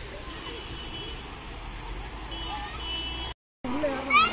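Outdoor ambience of faint, distant voices over a steady low rumble, with a faint high steady tone sounding twice. The sound drops out for a moment near the end.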